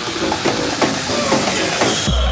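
Build-up of an electronic house track: a bright, hissing noise wash with short synth notes sliding downward in pitch about twice a second.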